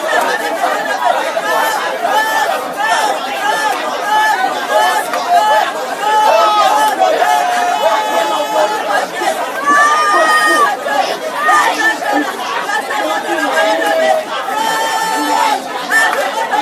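Many voices praying aloud at the same time, a congregation's overlapping speech in a large hall.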